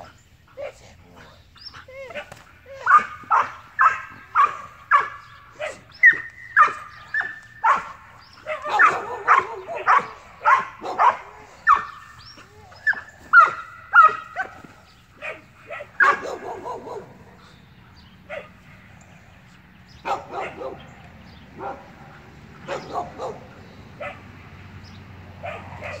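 Belgian Malinois barking in a rapid run, about two barks a second, for roughly fifteen seconds, then barking only now and then toward the end.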